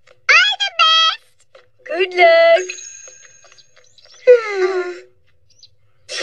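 Cartoon character voices making wordless cries: two short rising calls near the start, a held cry about two seconds in followed by a thin high steady tone, and a long falling wail about four seconds in.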